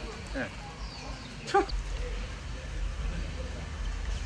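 Outdoor background with a low rumble, a brief voice-like sound near the start and one short, sharp cry about one and a half seconds in.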